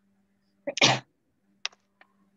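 A person sneezing once, a short catch followed by a loud burst, under a second in. A short sharp click follows near the end, over a faint steady low hum.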